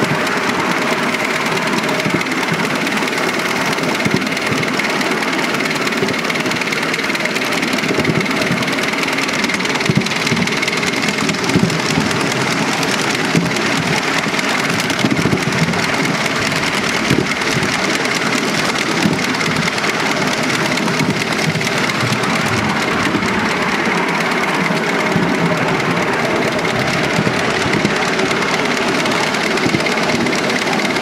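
Miniature live-steam locomotive, a model of a Midland Compound, running steadily along a raised track, its exhaust and running gear making a continuous dense mechanical clatter with small clicks from the wheels on the rails. Heard close up from the riding truck behind it, with a faint steady high tone throughout.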